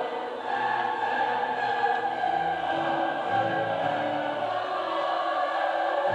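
Choral music: a choir singing sustained notes, played as a film's soundtrack through room speakers.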